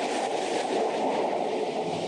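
Freight train with diesel locomotives running along the tracks, a steady noise picked up on a body-worn camera's microphone.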